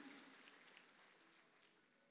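Near silence: a faint hiss dies away over the first second or so, then only quiet room tone.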